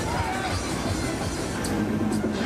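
Polyp fairground ride running: a steady mechanical rumble from the spinning ride, with a brief squeal early on, over loud ride music.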